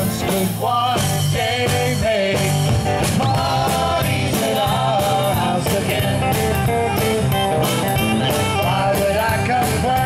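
A live folk-rock band playing an instrumental passage: acoustic guitars, drum kit and saxophone over a steady beat.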